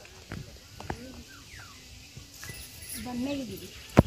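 Faint distant voices with wavering pitch, and a sharp click at the very end.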